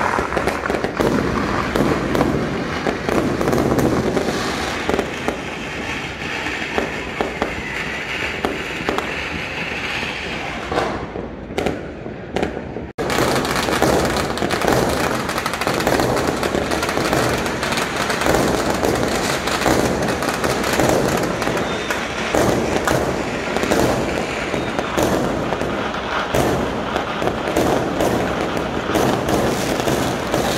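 Many fireworks and firecrackers going off together, a dense, continuous rattle of bangs and crackling. It thins briefly about eleven seconds in, breaks off for an instant near thirteen seconds, then carries on as thick as before.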